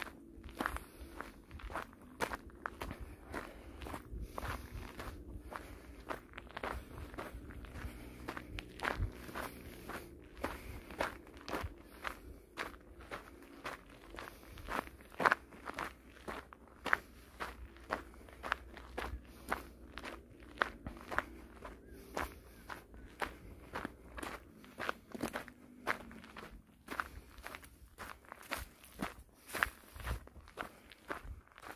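Footsteps of a person walking at a steady pace on a dirt-and-gravel forest trail, about two steps a second, each step a short crunch.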